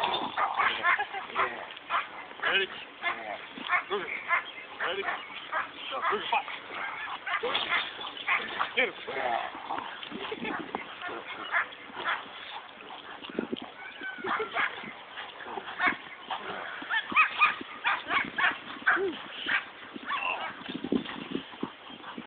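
A Dutch shepherd and a Belgian Malinois barking repeatedly, worked up during bite work, amid short shouted calls of "Ready" and a laugh.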